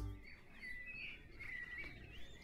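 Faint birdsong: small birds chirping and twittering, with short high notes repeating through it.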